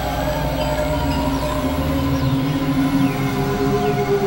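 Experimental electronic synthesizer drone music: layered sustained tones over a deep bass drone, with short high falling glides recurring about once a second. The deepest part of the drone drops away about two seconds in.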